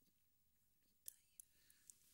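Near silence: quiet room tone, broken by a few faint short clicks from about a second in.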